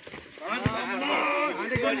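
Several men's voices calling out in long drawn-out shouts and breaking into laughter, with two short thuds about half a second apart.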